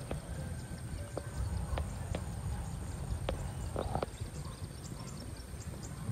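Small birds chirping over a rice field: short, faint, high chirps, more of them in the second half. Under them is a low rumble of wind on the microphone, with a few sharp clicks.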